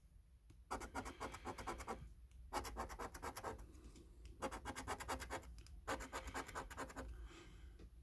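A coin scraping the scratch-off coating from a paper lottery scratch card in quick back-and-forth strokes, in several bursts with short pauses between them.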